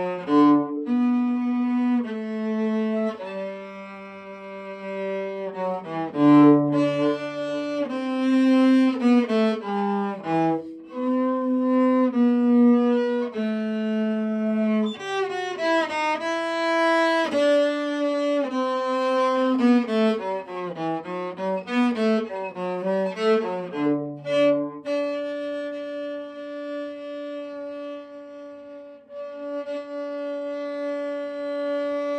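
Solo cello, bowed, playing a moving line of separate notes, then settling on one long held note near the end.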